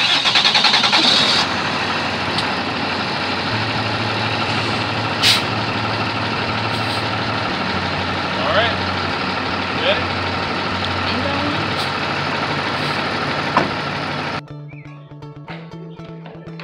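A box truck's diesel engine cranking and catching, then running at idle, with a short sharp hiss about five seconds in. It stops abruptly near the end, where guitar music takes over.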